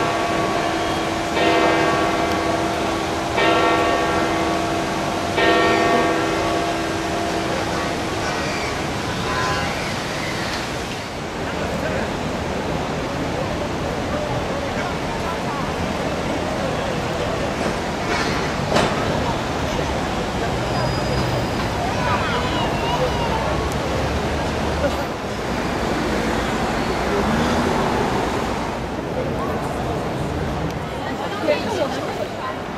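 Church bells of St Peter's Basilica ringing, several tones sounding together and struck again about every two seconds, dying away by about nine seconds in. After that comes a steady murmur of crowd voices.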